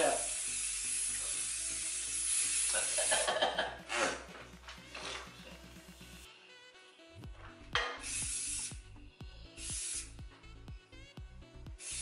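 Aerosol cooking-oil spray hissing as it greases a bundt tin: one long spray of about three and a half seconds, then two short bursts near 8 and 10 seconds.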